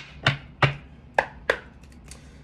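A tarot deck handled against a wooden desk: five sharp taps and clicks at uneven intervals as cards are knocked and laid down.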